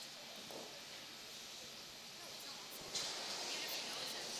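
Curling rink ambience: faint, distant voices of players on the ice over a steady hiss that gets louder about three seconds in.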